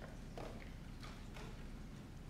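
A few faint knocks, about one every half second, over low steady room noise.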